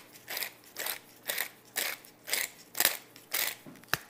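Tall stainless pepper mill grinding peppercorns, its top twisted by hand in a steady rhythm of short crunching rasps, about two a second.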